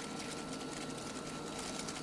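Quiet room tone: a steady low hiss with a faint high hum and no distinct sounds.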